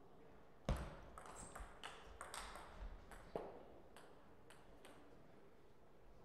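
Table tennis rally: the celluloid ball clicks off rackets and the table in quick succession for about three seconds, the loudest click first. A few fainter ticks follow.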